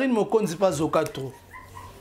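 A man talking animatedly, breaking off a little past halfway; in the pause a faint, brief high tone is heard.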